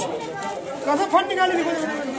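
Voices: several people talking at once, in overlapping chatter.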